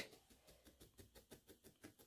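Near silence with faint, quick ticks, about six a second: a felting needle jabbing into wool wrapped on a wooden skewer.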